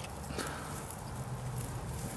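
Rustling of carrot foliage and light knocks of handling as a hand moves through the plants beside a plastic planter.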